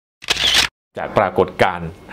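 A brief sharp sound effect about a quarter second in, then a man speaking Thai from about a second in.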